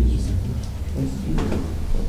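Meeting-room background during a show-of-hands vote: a steady low hum with low voices, and a single short knock about one and a half seconds in.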